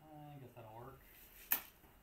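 A man's voice briefly, a short hum or mumble in the first second, then a single sharp click about one and a half seconds in.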